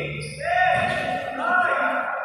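A song with a voice holding long, sustained notes, rising in loudness about half a second in.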